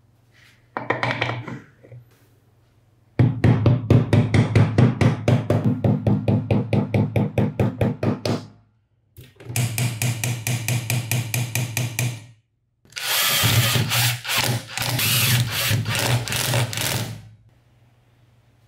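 Hand-tool work on the band saw's metal gear housing: three runs of rapid, evenly repeated scraping strokes, the first at about six strokes a second, separated by short pauses, with a low hum beneath.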